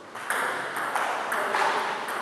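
Table tennis ball clicking off the bats and table in a quick rally, about five hits spaced roughly a third of a second apart.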